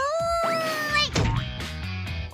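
Cartoon jump: a long, held vocal cry from a character in mid-leap, with a rising whistle-like sweep about half a second in, cut off by a short thud just after a second as it lands, over cheerful children's background music.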